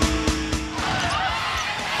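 Replay background music with a steady beat that stops about a second in, giving way to live basketball court sound: sneakers squeaking on the hardwood floor.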